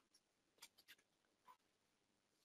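Near silence: room tone, with a few very faint clicks.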